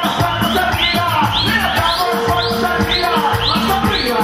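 Live cumbia band music, instrumental with no singing: a steady dance beat with bass, and a high swooping chirp-like note repeating two or three times a second. A held tone joins about halfway through.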